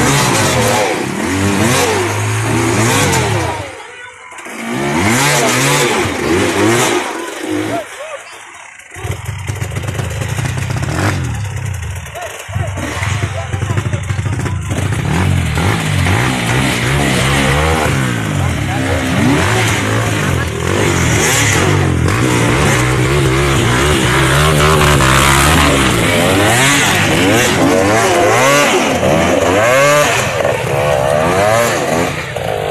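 Trail motorcycle engines running and revving while a dirt bike is pushed through mud, with voices over them. The sound drops away briefly around four seconds in and again around eight to nine seconds, then the engine runs steadily.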